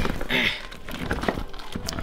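A large batch of thick, sticky slime being stirred with a spatula in an inflatable plastic paddling pool. Irregular wet stirring noises mix with the crinkling of the pool's plastic wall.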